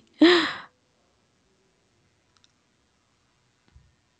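A woman's short breathy laugh, then near silence with a couple of faint taps.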